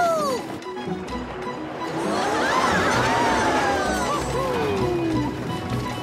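Cartoon characters' voices whooping and screaming on a roller coaster over background music. A falling "woo" trails off at the start. Then several voices whoop together for about three seconds in the middle, ending in one long falling cry.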